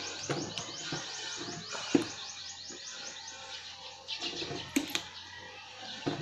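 A plastic tripod phone clamp and head clicking and knocking as a phone is handled in it, with one sharp click about two seconds in and another near the end. Behind it runs a fast, high-pitched repeating chirp, about five a second, for the first half.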